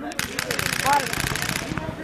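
Electronic paintball markers firing rapid strings of shots, starting just after the start and stopping shortly before the end, with a brief shout partway through.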